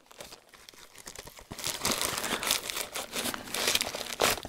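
Paper rustling and crinkling as a cluster of paper flowers is pushed into a paper envelope pocket, starting after a near-quiet first second and a half and running on as a busy crackle of small ticks.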